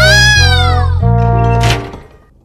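Bouncy cartoon background music with a steady bass line. Over it a high cry rises and then falls over about the first second.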